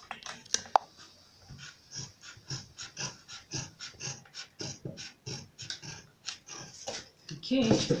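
Large dressmaking scissors cutting through PVC faux leather, a regular run of short snips about three a second.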